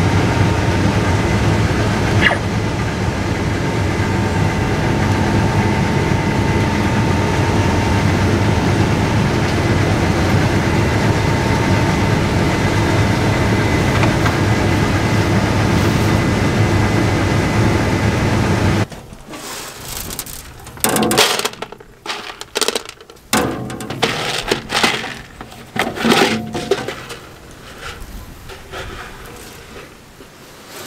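Combine harvester running in a black bean field, heard from inside the cab: a loud, steady drone with a low hum and a faint whine. It cuts off after about 19 seconds to scattered knocks, scrapes and rustles as a hatch on the side of the combine is opened and reached into to take a bean sample.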